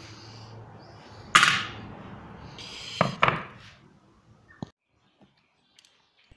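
Hand tools handled and set down on a workbench: a sharp clatter about a second in, then two quick knocks a couple of seconds later and a faint click, fading to near silence near the end.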